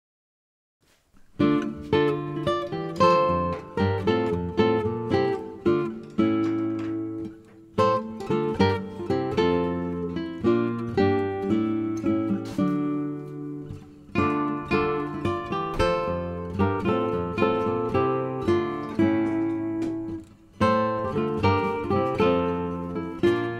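Acoustic guitar background music, plucked and strummed, starting about a second in after silence.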